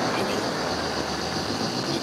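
Steady mechanical rumble with a constant hiss and a few faint ticks, even in level throughout.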